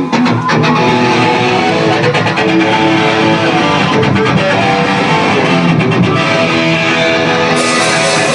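Punk rock band playing live and loud: electric guitars ringing out sustained chords over bass and drums, with no vocal line.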